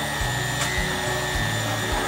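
Handheld immersion blender motor running steadily with a faint high whine as it blends a pot of shea butter mixture, under background music with a regular beat.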